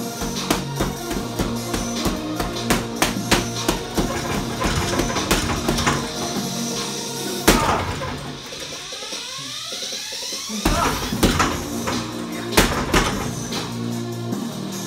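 Music with sustained tones plays throughout, over repeated sharp thuds of gloved punches landing on a hanging heavy punching bag; the loudest hit comes about halfway through, followed by a falling sweep in the music.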